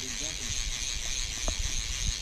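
Outdoor ambience: wind rumbling on the microphone under a steady high hiss, with a faint voice in the distance near the start and a single small click about one and a half seconds in.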